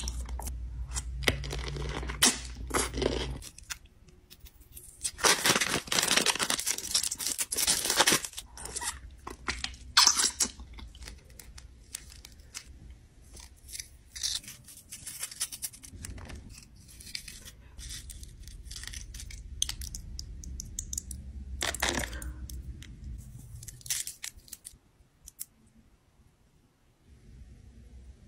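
Crinkling, tearing and crunching of candy and snack packaging being handled, in irregular bursts with rustles and small crunches between. The longest, loudest burst runs from about five to eight seconds in, with shorter ones about ten seconds in and again near twenty-two seconds.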